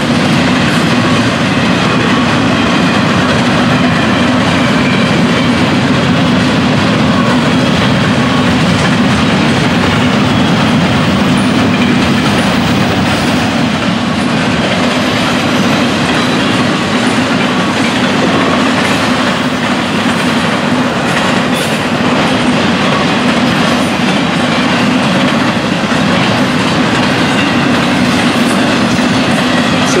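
Intermodal freight train cars rolling past, steel wheels running on the rails in a loud, steady din with the rattle of double-stack well cars and trailer-carrying flatcars.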